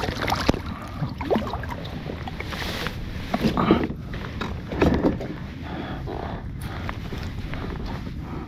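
Water lapping against a plastic fishing kayak's hull, with wind on the microphone and a few short knocks and rustles of gear being handled, the loudest about three and a half and five seconds in.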